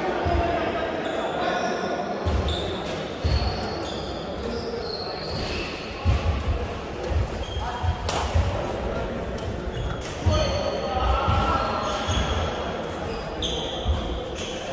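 Badminton doubles rally on a sports-hall court: sharp racket hits on the shuttlecock, the clearest about eight seconds in, with footfalls thudding and shoes squeaking on the court floor, in a large echoing hall with voices in the background.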